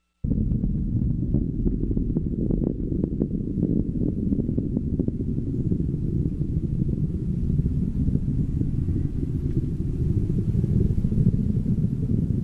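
Deep, steady rocket rumble from a SpaceX Falcon 9 launch. It starts abruptly, with sharp crackles through the first few seconds.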